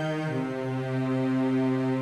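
Electronic keyboard holding sustained chords, with the low note stepping down about a third of a second in and then held.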